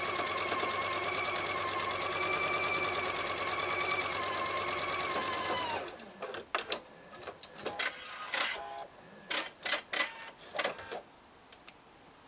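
Electric sewing machine stitching a seam at a steady speed: a motor whine with rapid, even needle strokes, which stops abruptly about six seconds in. After it, scattered sharp clicks and fabric handling.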